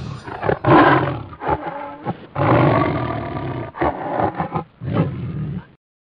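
A big cat roaring and growling, dubbed in as a sound effect: several long, rough roars in a row that cut off suddenly near the end.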